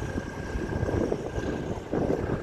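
Wind buffeting the microphone outdoors: an uneven, gusting low rumble.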